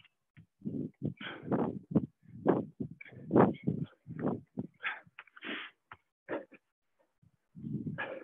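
Hard breathing of people exercising through push-ups and sit-ups: short, irregular bursts of breath, one after another, with silent gaps between them.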